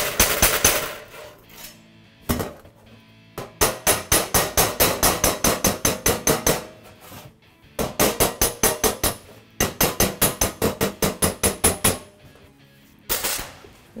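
Hammer and dolly on thin welded sheet steel: several quick runs of light, sharp taps, about six a second, each with a metallic ring, separated by short pauses. The taps flatten warpage raised by the TIG tack welds.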